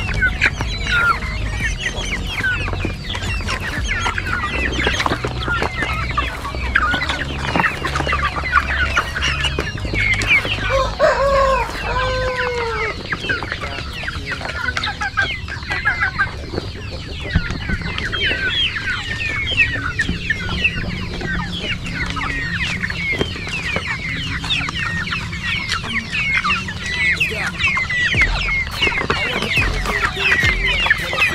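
A crowded flock of young chickens feeding at a plastic tray: a constant chatter of short chirps and clucks, over sharp clicks of beaks pecking the tray. About eleven seconds in, one louder drawn-out call stands out.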